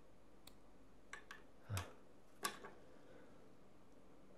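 Small scissors snipping fishing line, trimming the tag end of a freshly tied FG knot close: a handful of sharp clicks, the loudest about two and a half seconds in.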